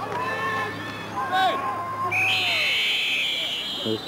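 Voices shouting across the field, then a referee's whistle blown in one long, shrill blast starting about two seconds in as the play ends in a pile-up.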